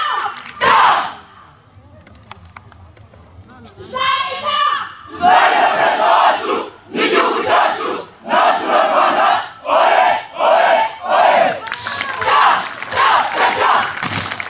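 A unit of soldiers shouting in unison as a drill: one loud shout near the start, then after a pause a single lead call answered by a run of rhythmic group shouts about one a second.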